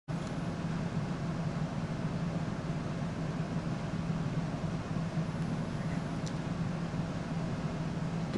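Steady low hum with an even hiss: background room noise with no distinct event.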